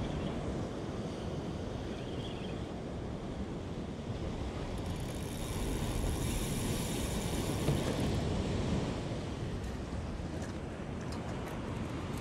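Ocean surf surging and breaking against breakwall rocks, with wind buffeting the microphone: a steady rushing that swells a little midway.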